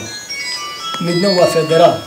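A simple electronic melody of short, pure beeping tones stepping from pitch to pitch, with a man's voice speaking over it for about a second in the middle.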